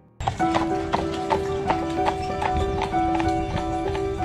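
Horse hooves clip-clopping on pavement in an even rhythm of about three steps a second, over background music holding a steady tone.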